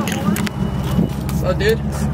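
Drift car's engine idling steadily, cutting off at the very end.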